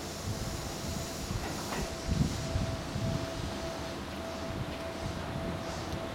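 Seibu 30000 series electric train pulling slowly into the station: a low running rumble with a thin steady whine held throughout.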